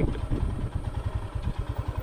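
Royal Enfield Himalayan's single-cylinder engine running at low revs as the bike slows. Its exhaust beats come evenly, about a dozen a second.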